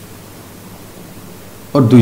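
A steady, faint hiss of room tone and recording noise in a pause between sentences, with a man's voice starting again near the end.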